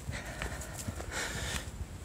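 Footsteps on a dry clay-soil hiking trail during an uphill climb: faint, irregular crunching steps.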